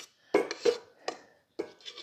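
A metal spatula clinking and scraping against a mixing bowl as frosting is scooped out: about five short, separate knocks and scrapes.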